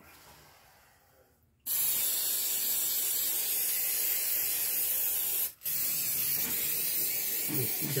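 Aerosol brake cleaner spraying in a long steady hiss that starts about one and a half seconds in, breaks off for a split second, then carries on, degreasing spilled engine oil during an oil change.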